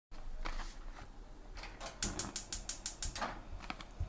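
Gas cooker's spark igniter clicking: a few scattered clicks, then a quick run of about eight sharp clicks, roughly seven a second, for about a second midway.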